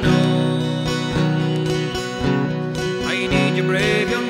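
Acoustic guitar strummed in a steady rhythm, its chords ringing on between strokes.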